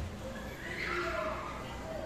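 A person's high voice calls out once, sliding down in pitch, over a background of other voices.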